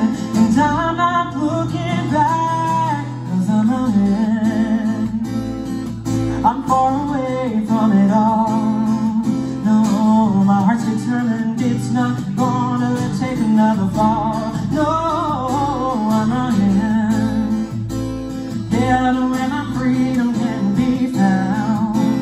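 A man singing a country-pop song with a wavering vibrato over a strummed acoustic guitar, a live acoustic duo amplified through a PA.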